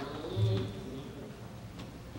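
A brief low hum of a man's voice about half a second in, then quiet room tone with a faint click near the end.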